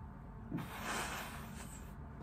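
A man's forceful exhale during a push-up: a breathy rush of air starting about half a second in and lasting about a second.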